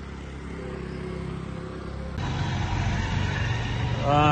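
Road traffic: a steady low engine hum, cut off abruptly about two seconds in by a louder, rougher traffic rumble.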